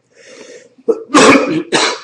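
A man coughing: a faint intake of breath, then a couple of loud, harsh coughs in the second half.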